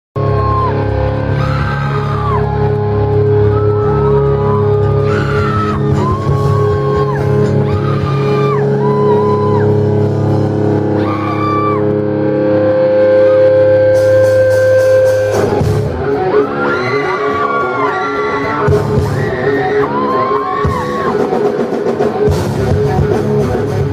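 Live rock band playing through a club PA: held, ringing guitar and bass chords with a high bending melody over them, then cymbals come in about fourteen seconds in and the full band with drums kicks in about a second later.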